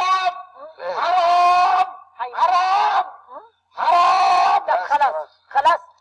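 A man shouting in Arabic at the top of his voice, in several long, strained cries broken by short pauses.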